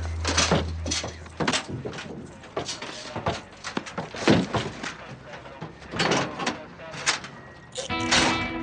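Film soundtrack of people boarding a van: a busy run of short knocks and clinks, with indistinct voices under them and a low hum that stops about a second in.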